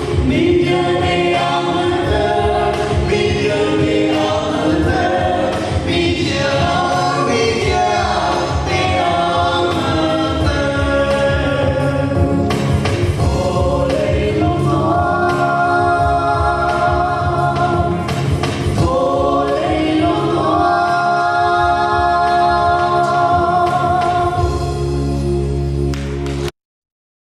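Several voices singing together in a Lai (Hakha Chin) Christmas gospel song over instrumental accompaniment, closing on a long held chord near the end.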